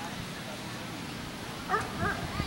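A dog barks twice in quick succession near the end, short high barks over the steady murmur of an outdoor crowd.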